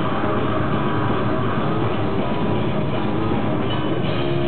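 Death metal band playing live: a dense, muffled wall of heavily distorted guitars with fast, rapid-fire drumming, at an even loud level.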